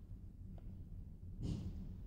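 Quiet room tone with a low hum, and a single soft breath about one and a half seconds in.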